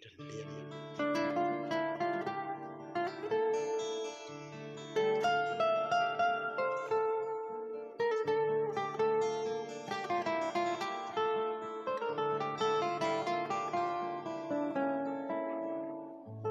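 Instrumental introduction of a karaoke backing track: a plucked-string melody of separate notes over a steady bass line, with no voice yet.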